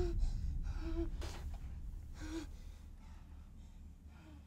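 A frightened woman breathing in short, shaky gasps, about three of them with a faint voiced catch in each, over a low rumble that fades away.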